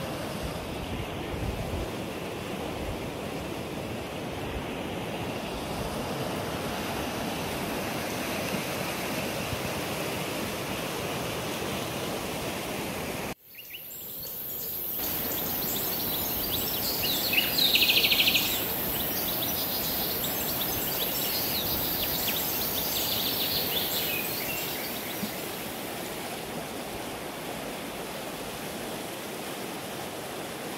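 Fast glacial meltwater river rushing over gravel, a steady wash of water noise. About thirteen seconds in it cuts out abruptly and returns, and a few seconds later a short, higher-pitched clicking rattle sits on top of it.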